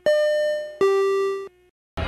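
Two-note ding-dong chime sound effect: a higher note rings out, then a lower note is struck just under a second later and cuts off abruptly.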